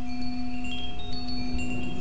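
Chimes ringing in scattered, irregular high notes over a steady low held drone.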